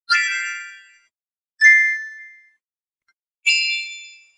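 Three bell-like chime notes, spaced more than a second apart, each struck sharply and ringing out to fade within about a second.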